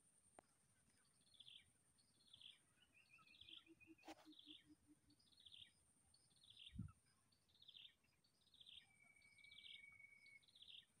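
Faint bird calls: a short falling chirp repeated about once a second, with a brief trill about three seconds in and a held whistle near the end. A low thump about seven seconds in.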